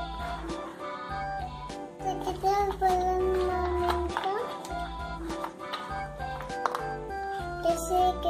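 Background music with a repeating bass line and steady held notes, with a child's voice holding long notes over it from about two seconds in and again near the end.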